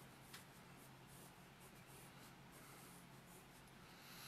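Graphite pencil sketching on paper: faint, repeated short scratching strokes as lines are drawn, with one light tick about a third of a second in.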